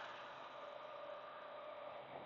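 Faint, steady road and engine noise inside a moving semi-truck's cab, with a low steady hum.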